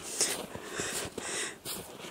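Footsteps crunching in fresh snow, a quiet step about every half second.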